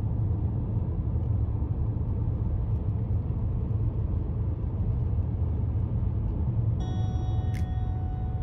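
Steady low rumble of a car driving on an open road, heard from inside the cabin: tyre and engine noise. Near the end a few faint steady tones come in, with one sharp click.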